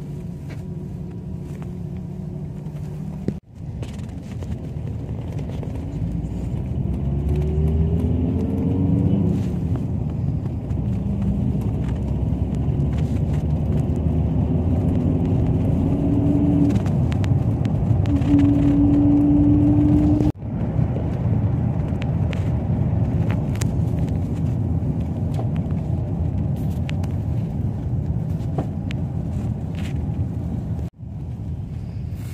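Iveco Daily minibus heard from inside the cabin: steady engine and road rumble while driving. The engine pitch rises as it accelerates about a quarter of the way in, and a steady whine runs for a few seconds past the middle. The sound cuts out abruptly twice, once early and once about two-thirds of the way through.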